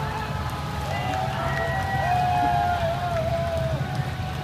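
Motorcade of police escort motorcycles and cars passing, with a steady low engine rumble and wavering, gliding tones above it.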